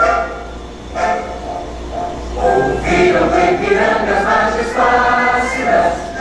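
Choir singing with musical accompaniment, the voices getting fuller and louder about halfway through.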